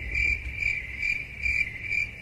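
A high, steady chirping tone that pulses about four times a second, starting and stopping abruptly.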